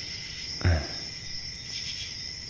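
Steady background chirping of crickets, a continuous high-pitched drone. About half a second in comes a brief low vocal sound, a breath or hum.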